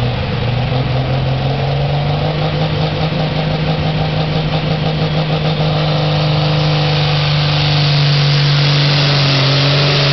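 Diesel pulling tractor's engine revving up and running hard under the load of a pulling sled. It steps up in pitch just at the start, then holds high, steady revs, growing louder from about six seconds in.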